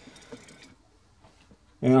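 A faint, brief rustle of handling noise in the first second, then quiet until a man starts speaking near the end.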